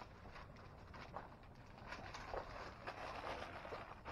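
Quiet outdoor background with faint rustling and a few scattered light clicks.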